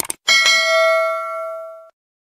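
Two quick clicks followed by a single bell ding, the notification-bell sound effect of a subscribe-button animation. It rings for about a second and a half and stops abruptly.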